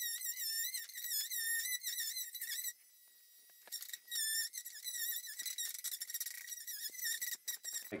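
Oscillating multi-tool undercutting a door jamb at floor level. It is heard as a thin, high, wavering whine that fades out briefly about three seconds in and then starts again.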